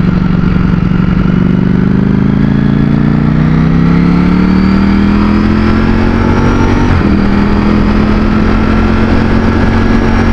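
Ducati Streetfighter V4's V4 engine pulling hard in second gear, its pitch rising steadily for about seven seconds. About seven seconds in, the pitch drops sharply on the upshift into third, then holds steady.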